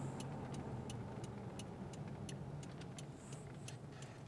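Toyota's turn-signal indicator ticking about three times a second inside the cabin, over the low, steady hum of the engine, as the car waits to turn left.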